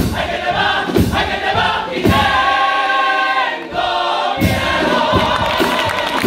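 A men's carnival choir singing the closing phrase of a pasodoble in full chords, over Spanish guitars. Drum strikes punctuate it about once a second, and a long chord is held near the middle.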